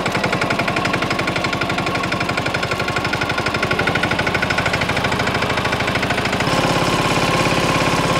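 Mahindra Yuvraj 215 NXT mini tractor's single-cylinder diesel engine running steadily with a fast, even thudding pulse while pulling a cultivator through the soil. It gets a little louder about six and a half seconds in.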